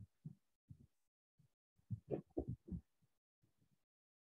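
Faint, indistinct muttering in a few short bursts, mostly around the middle, with dead silence between them.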